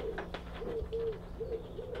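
A pigeon cooing, about four short low notes in a row. Faint clicks from plastic drip tubing being handled.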